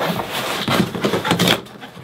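Fingers picking and tearing at packing tape on a large cardboard box: a scratchy ripping and rubbing of tape and cardboard, dying down after about a second and a half.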